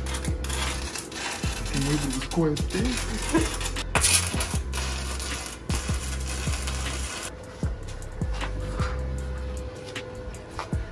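Stick (arc) welding on a steel window grille: the arc crackles and sizzles, flares up about four seconds in and stops about seven seconds in. Background music with a beat plays underneath.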